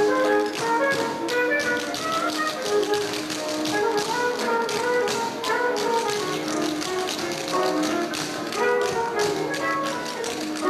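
Tap shoes striking the floor in quick runs of sharp clicks as a group tap-dances, over recorded music with a melody.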